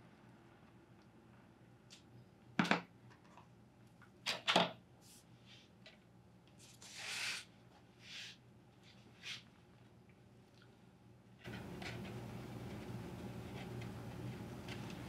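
Quiet small hand-work sounds: a few sharp snips and clicks of scissors cutting electrical tape, then soft scrapes and rustles as the tape is pressed onto a cardboard box and wire. A louder steady background hiss comes in near the end.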